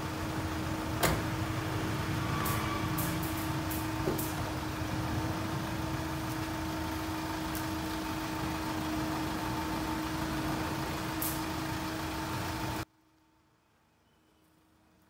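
Van engine idling in a steady hum, with a few light clicks over it; the sound cuts off abruptly near the end.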